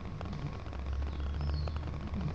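Faint, brief high squeak of the back of a finger dragged across tacky gold leaf size on a painted finial. The squeak is the sign that the size has reached the right tack for laying 23-karat gold leaf.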